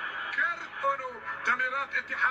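Speech only: a man's voice talking quietly, the match broadcast's TV commentary playing under the reaction.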